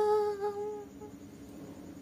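A woman's voice holding the last note of the song at a steady pitch, fading out within the first second, then low room tone.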